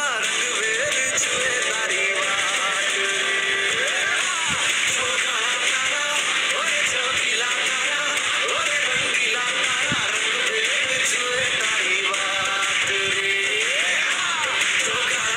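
Music: a song with a sung melody over a continuous instrumental backing.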